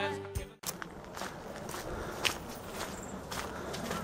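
A man's song with backing music, a held note, cuts off suddenly about half a second in. After that, quiet outdoor background with a few footsteps, about one a second.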